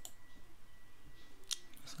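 Two quick computer mouse clicks about a second and a half in, over a faint steady high-pitched tone and low room hiss.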